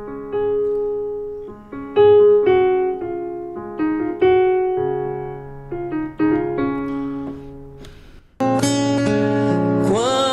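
Keyboard music: slow electric piano chords, each struck and left to fade, in a gentle church-song introduction. About eight seconds in the music jumps suddenly to a louder, fuller band sound.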